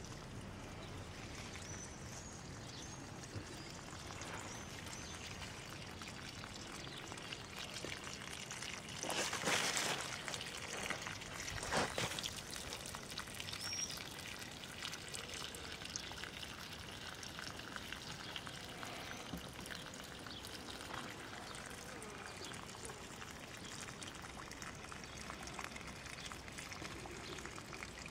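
Water running from a garden hose and pouring into standing water in an irrigation furrow: a steady trickle that gets louder for a few seconds around the middle.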